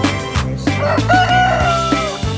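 A rooster crows once, a long call starting about a second in, over background music with a steady beat.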